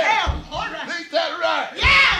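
A man's raised voice, shouted or chanted with large swoops in pitch, with two deep thumps, one just after the start and one near the end.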